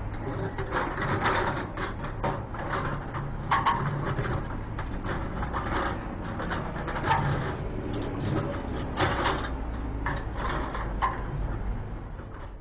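Mechanical clattering and irregular knocking over a low steady hum, sound effects for a drilling rig being dismantled.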